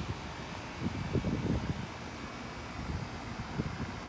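Wind buffeting the microphone outdoors, with a burst of low rumbling about a second in, over a steady background hiss.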